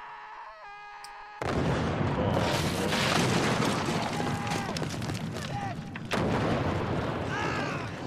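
War-film soundtrack: a shout of "Medic!", then about a second and a half in a sudden, loud artillery barrage of shell explosions begins and runs on, with men shouting through it and a fresh surge of blasts about six seconds in.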